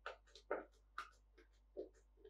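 Plastic brew kit pouch crinkling as a gloved hand grips and handles it, in short irregular crackles, several a second.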